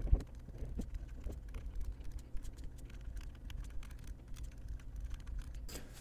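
Stylus tapping and scratching on a tablet screen while handwriting, a quiet run of many small irregular ticks, with a low thump right at the start.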